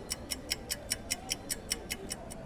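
A clock-ticking sound effect, sharp even ticks at about five a second, marking a pause while an answer is thought over.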